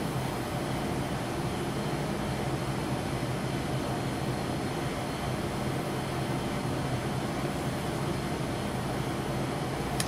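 Steady mechanical hum and hiss of a ventilation unit running, even throughout with no separate sounds.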